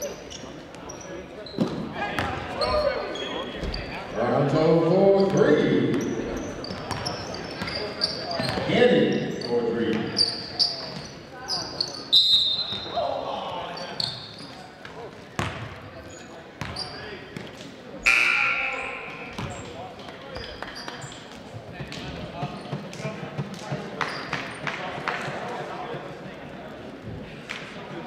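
Basketball game in a gym: the ball bouncing on the hardwood court with short sharp knocks, amid loud shouting voices of players and spectators that echo in the hall.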